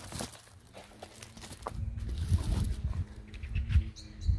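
Handling noise from a rolled diamond painting canvas being spread out and pressed flat on a table: soft rustling and crinkling with irregular low thumps. A faint steady hum comes in about a second in.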